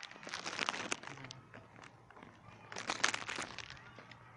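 Two short bursts of crackly rustling close to the microphone, the first about half a second in and the second about three seconds in.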